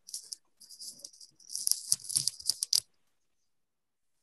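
Irregular rattling, rustling noise, mostly high-pitched with faint low knocks, that stops a little before three seconds in.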